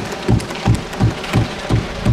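Members of Parliament thumping their desks in approval, a steady rhythmic pounding of about three heavy beats a second under a patter of many hands on wood.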